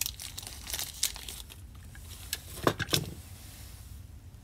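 A thin plastic bag crinkling and tearing as a small ball bearing is unwrapped by hand, busiest in the first second and a half. Two sharp clicks follow about three seconds in.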